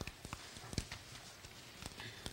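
Scattered sharp clicks and knocks, several in two seconds and irregularly spaced, the strongest about three-quarters of a second in and near the end, over faint room hum.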